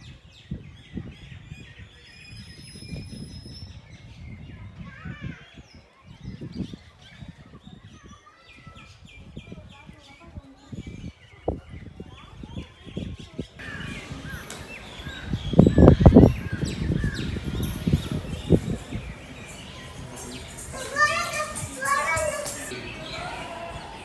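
Outdoor ambience: background voices and bird chirps, with a low rumble on the microphone for a couple of seconds about fifteen seconds in.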